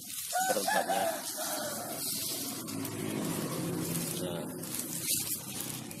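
A rooster crowing once, a long call drawn out over several seconds, over the light patter of triple superphosphate (TSP) fertilizer granules being sprinkled onto dry leaves and soil.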